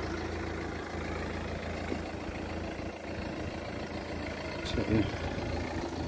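BMW 218d's four-cylinder diesel engine idling with a steady low hum.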